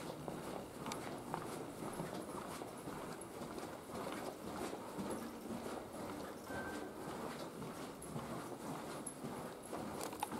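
Footsteps of a person walking at a steady pace on a carpeted floor, soft regular thuds over a steady low background noise.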